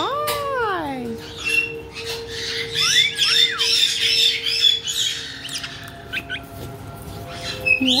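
Caiques chattering, with many short high squawks and chirps and a couple of rising-and-falling whistles, busiest in the middle.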